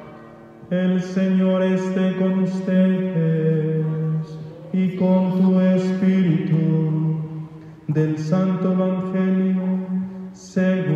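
Church music: a sung Gospel acclamation chant with sustained accompaniment, moving in held notes and phrases of a few seconds with brief breaks between them.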